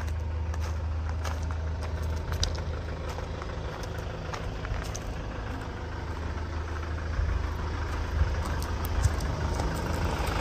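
A Hyundai Grand Starex van's engine idling steadily, a low even rumble, with scattered light clicks.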